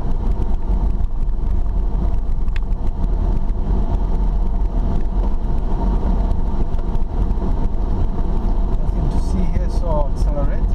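Steady low rumble of a car driving on an unpaved dirt road, heard from inside the cabin: engine and tyre noise. A few short wavering pitched sounds come in near the end.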